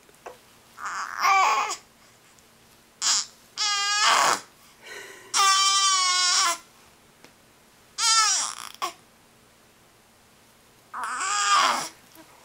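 Newborn baby fussing: a string of about six short, high-pitched cries with wavering pitch, each lasting up to about a second, separated by quiet pauses.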